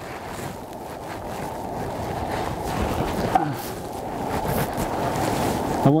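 Wind buffeting the microphone: a rough, rumbling noise that grows slowly louder, with faint rustles of clothing as the climber works at the rock.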